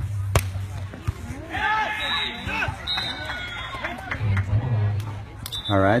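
Voices talking and calling out, from about one and a half to four seconds in, with a single sharp knock about half a second in.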